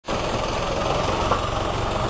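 A 4x4 SUV's engine running steadily at low revs close by, with a fast, even low pulse, as the vehicle crawls slowly onto a rutted mud track.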